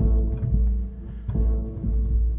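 Sampled orchestral timpani stabs from a lo-fi patch built from old film and TV recordings, played on a synth: low, booming drum notes struck at the start and again about a second and a quarter in.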